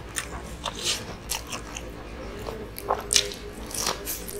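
Close-miked chewing and biting of crispy Japanese fried chicken (karaage): irregular crunchy crackles of the fried batter and wet mouth clicks, with a few louder bites about three seconds in and near the end.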